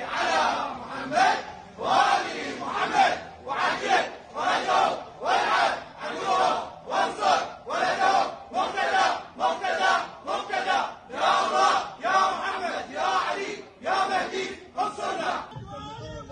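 A group of men chanting in unison: short, rhythmic shouts, about three every two seconds, that stop just before the end.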